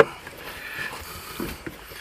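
Screwdriver backing a screw out of a plastic center console: faint scraping with a sharp click at the start and a couple of light knocks about one and a half seconds in.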